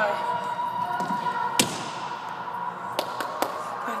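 One sharp thud of a person hitting a wooden gym floor about one and a half seconds in, with a short echo after it, followed by two lighter taps near the end.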